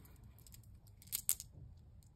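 A small bag of tumbled crystals being handled and opened: faint rustling with a few short crackles about a second in, as the little stones are tipped out into a palm.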